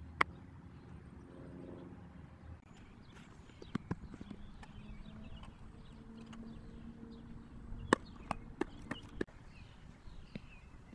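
A softball smacking into a leather fielding glove just after the start, followed by more sharp knocks and clicks: a quick pair a little before four seconds and a run of five about eight to nine seconds in, the first of these the loudest. A faint steady hum runs underneath.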